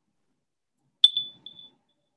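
A paintbrush clinking against a glass water jar about a second in: a sharp tick that rings briefly at one high pitch, a second tick just after, then a fainter ping.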